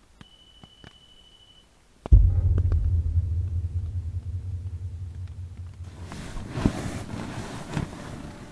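A motion-detector alarm (the 'pod') set outside the tent is triggered: one faint, steady high beep about a second and a half long. About two seconds in comes a sudden loud low thump and rumble that fades slowly, and near the end a rustle as the sleeper stirs and sits up in his sleeping bag.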